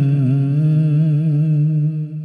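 The title theme music ending on one long, loud hummed vocal note with a slight waver.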